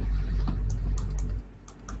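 Light, irregular clicks and taps of a stylus on a pen tablet as Chinese characters are handwritten, over a low background hum that drops away about one and a half seconds in.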